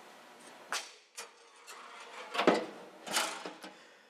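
Hinged stainless-steel front door of an ozone generator cabinet being swung shut: a couple of light clicks, then two louder metal clunks in the second half as it closes.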